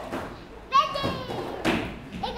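A child's high-pitched shout or squeal, falling slightly in pitch, about two-thirds of a second in and lasting about a second, over children's voices. A thud near the end.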